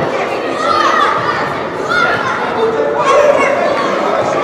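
Many overlapping young voices shouting and calling during an indoor youth football match, echoing in a large hall.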